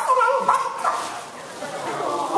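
A woman's very high, squeaky cartoon-character voice over a microphone, pitched in the first half second, then trailing off into a rougher, quieter stretch.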